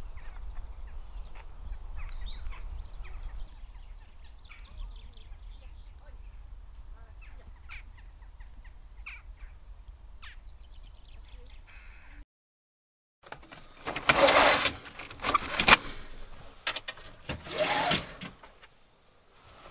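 A low steady outdoor rumble with scattered short bird chirps. After a brief cut to silence about twelve seconds in, a stretch of loud rustling and knocks inside a camper van.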